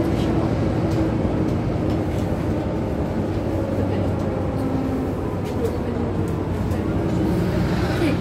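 Inside a VDL Citea CLF 120 city bus on the move: steady engine and road rumble, with occasional light rattles.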